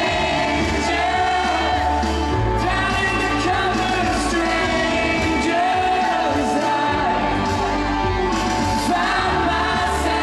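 Live rock band playing, with a male lead vocal singing long held notes over a steady bass line, recorded from the concert audience.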